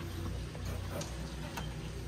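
A few faint clicks as the hinged lid over a boat's summer kitchen is lifted open on its gas strut, over a steady low hum.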